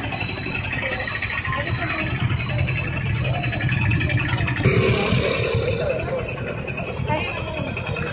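Two-wheeler engines idling, with street traffic rumbling and people talking over them; the sound changes abruptly about halfway through.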